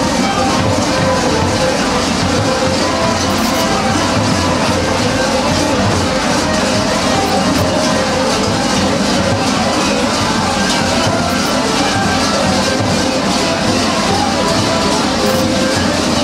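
Many large waist-hung kukeri bells clanging together in a dense, continuous din as a troupe of dancers jump and stamp in step.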